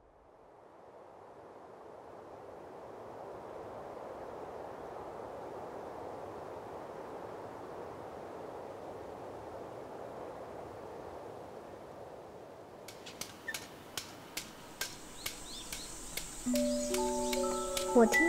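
Ambient soundscape: a soft, steady rushing hum of city ambience that swells in over the first few seconds. From about 13 s in, sharp irregular clicks join it, and near the end several held musical notes come in along with bird chirps.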